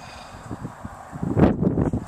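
Wind buffeting the microphone: low, faint background noise, then a loud gust from about a second and a half in.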